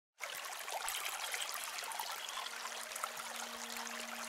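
Running water, like a small stream trickling, starting suddenly just after the opening. About halfway through, a low steady tone joins in beneath it.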